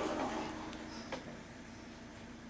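Quiet room with a steady low hum and a couple of faint clicks about a second in, from hands working a piece of modelling clay.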